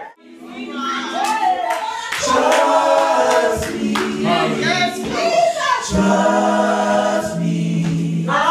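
A church choir singing, several voices holding long notes together, with a man leading into a handheld microphone.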